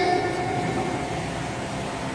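Steady hiss and low hum of a mosque's reverberant prayer hall and its microphone system, with the echo of a boy's chanted voice dying away in the first moment.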